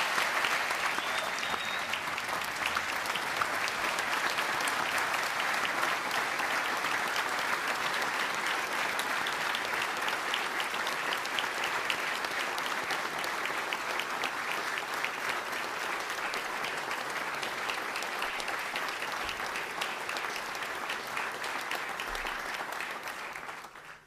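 A large audience applauding: sustained, dense clapping that dies away in the last couple of seconds.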